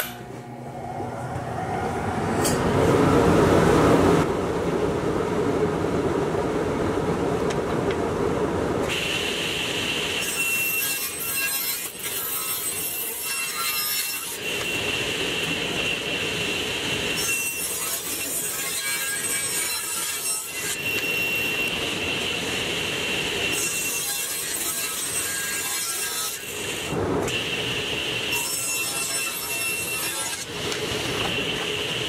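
Table saw running and cutting cedar boards. Several cuts of a few seconds each, each one bringing a high blade whine and hiss over the steady running of the motor.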